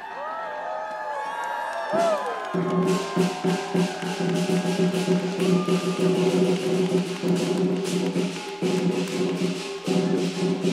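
Lion dance percussion of drum, gong and cymbals. It drops out for the first couple of seconds while voices call out, then comes back in about two and a half seconds in and plays on as a rapid, steady beat of cymbal crashes over the ringing drum and gong.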